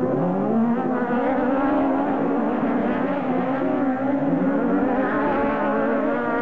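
Several 1600 cc autocross buggies racing on a dirt track, their engines revving high together and overlapping, the pitches rising and falling as they come out of a corner and accelerate away.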